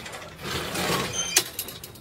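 Metal chain-link gate rattling, with a brief squeak and then a sharp clank about one and a half seconds in, followed by a few lighter rattles.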